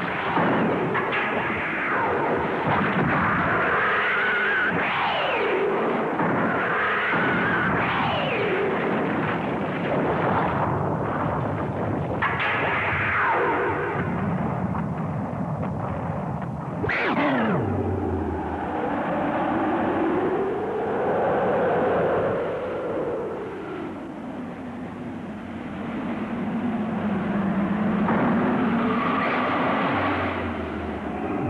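Monster-battle sound effects: blasts and rumbling, with monster roars and shrieks that rise and fall in pitch. There is a steep falling screech about seventeen seconds in, and long wavering cries in the second half.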